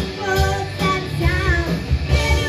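Live rock band playing, with a lead vocalist singing held, wavering notes over drums, bass and guitar.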